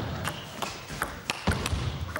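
Table tennis rally: a celluloid ball clicking off the rackets and bouncing on the table, about four sharp clicks a second in a large hall.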